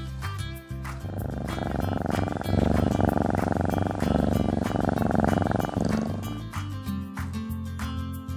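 A cat purring for several seconds, starting about a second in and fading near six seconds, louder than the background music. Light background music plays throughout.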